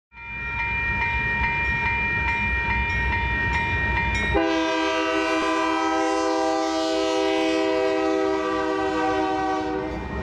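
A bell rings rapidly, about twice a second, over a low rumble as a Union Pacific freight train approaches the crossing. Then, about four seconds in, the locomotive's multi-chime air horn sounds one long, steady blast that lasts about five seconds.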